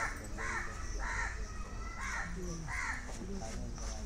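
A bird calling over and over in a steady series, about two short calls a second.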